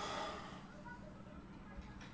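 A man's brief breathy vocal sound in the first half-second, then a faint steady low hum.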